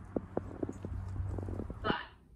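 Footsteps crunching through snow, several uneven steps a second, over a steady low hum.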